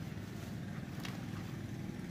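Steady low background rumble with a couple of faint light clicks.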